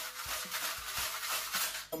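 Salt being added to a plate of pasta: a quick rhythmic rasping rattle of about five strokes a second that stops just before the end.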